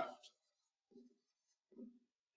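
Near silence: room tone as a spoken phrase trails off, with two faint, short, low sounds about a second in and near the end.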